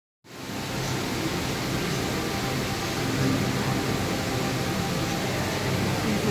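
Steady, even rushing background noise with a faint low hum, from the touch tank's circulating water and the room's air handling.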